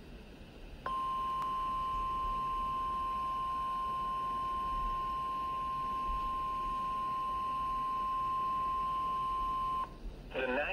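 NOAA Weather Radio warning alarm tone: a single steady beep near 1 kHz (the 1050 Hz alert tone) through a Midland weather radio's small speaker. It starts about a second in, holds for about nine seconds and cuts off just before the end. It signals that a warning-level alert, here a tornado warning, is about to be read.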